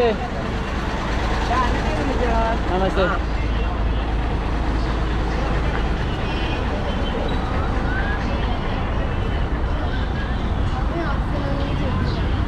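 Road traffic: motor vehicles running close by, a steady low engine rumble that weakens after the first few seconds, under general street noise.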